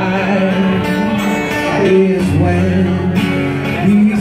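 Live acoustic song: a man singing into a microphone over an acoustic guitar.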